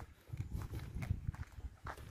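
Faint, soft footsteps on a dirt path, a handful of uneven steps.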